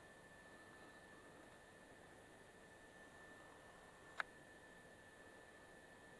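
Near silence: a faint steady hiss with a thin, steady high-pitched whine, and a single short click about four seconds in.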